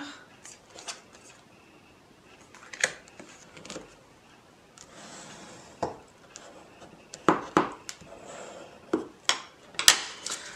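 Card stock being handled on a craft mat while a fold is creased with a bone folder: soft rubbing and paper rustle, with several short sharp taps and clicks, the loudest ones near the end.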